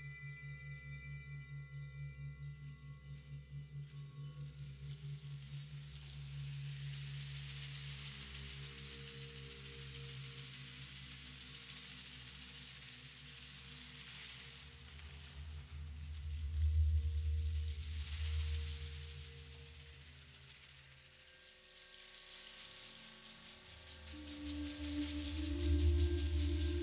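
Slow ambient percussion and keyboard music: sustained low drone tones and ringing bowl-like tones under slow swells of a soft hissing wash. It swells louder in the low end about two-thirds of the way through and again near the end.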